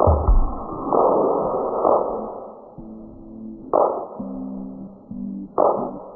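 Loud electronic dance music from a DJ set. The kick drum stops about half a second in and a noise swell follows. Then sustained synth chords come in, with a short swelling noise hit about every two seconds.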